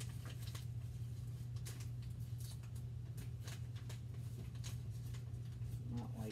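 Irregular small clicks and rustles of hands handling something at a door, over a steady low hum.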